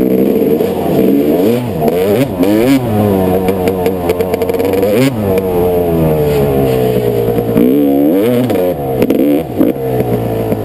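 Dirt bike engine revving hard and easing off again and again as it is ridden along a rough trail, its pitch climbing and dropping with the throttle and gear changes, with a few knocks from the bike over bumps.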